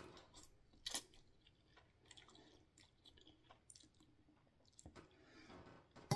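Faint chewing of a mouthful of ramen noodles: soft, scattered mouth sounds, with one short louder one about a second in.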